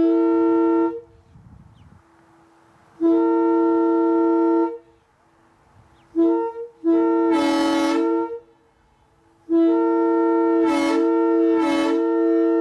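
A 1952 Nathan M3 three-chime locomotive air horn blowing a chord in a series of blasts: one ending about a second in, another around three to five seconds, a short toot and a longer blast around six to eight seconds, then a long blast from about nine and a half seconds, broken by two brief gaps.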